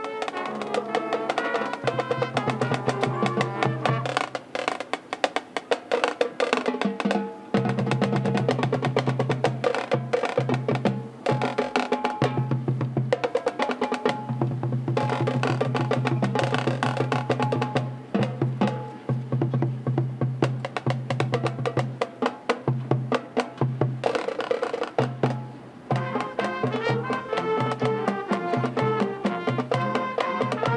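High school marching band playing its field show: fast, rhythmic percussion over pitched wind parts and held low bass notes that stop and come back several times.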